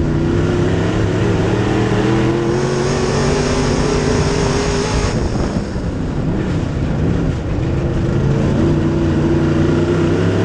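USRA B-Modified dirt track race car's V8 engine heard from inside the cockpit at racing speed: pitch climbs for about four seconds, drops off for a few seconds as the throttle eases for a turn, then climbs again near the end.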